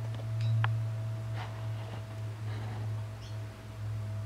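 A steady low hum with a faint, thin higher tone held throughout, and a few soft clicks in the first half.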